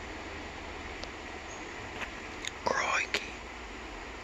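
Steady outdoor background hiss, with a few light clicks and one brief whisper about three seconds in.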